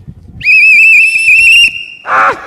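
A whistle blown in one loud trilling blast of just over a second, then held as a fainter steady tone.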